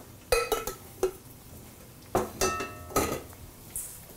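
Metal cookware clanking as a stainless steel saucepan is fetched and handled: a few sharp knocks with short metallic rings just after the start, then another cluster of knocks and rings past the middle.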